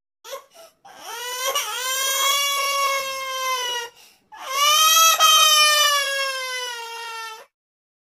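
Cartoon crying sound effect, pitch-shifted in the 'G Major' edit style: two short sobs, then two long wailing cries, each slowly falling in pitch, the second starting a little after halfway.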